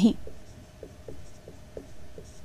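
Faint, light strokes of writing, a series of small scratches about every quarter second, just after the last syllable of a spoken word.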